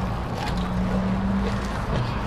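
Biting into and chewing a lettuce-wrapped burger in its paper wrapper, with a closed-mouth 'mmm' hum from about half a second in to near the end, over a steady low rumble.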